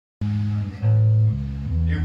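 Single low notes plucked on an amplified electric guitar. The notes start suddenly just after the opening, each is held about half a second, and they step up and down in pitch, like a player noodling before a song.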